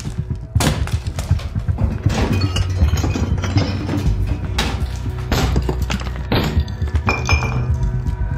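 Film score with a deep, steady low pulse, over repeated knocks and metallic clinks from hand tools being handled and struck.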